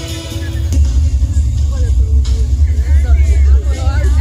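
A film soundtrack played loud through venue PA speakers: music gives way about a second in to a heavy, booming bass rumble, with voices rising and falling over it.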